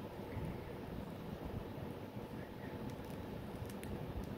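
Faint handling noise: a steady low rumble with a few light clicks near the end, as a DVD case and scissors are handled.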